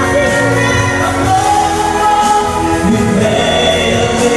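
Women singing into handheld microphones over instrumental accompaniment, with a held, gliding vocal melody over a steady bass line.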